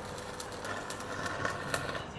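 Stick arc-welding electrode being used to cut through a steel window-frame section: a steady crackling hiss with a few sharp pops. The arc breaks off at the very end.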